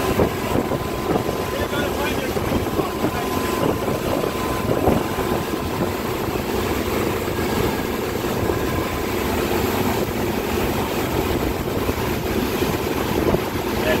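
Wake boat underway: its engine running steadily under the constant rush and wash of the churning wake behind the stern.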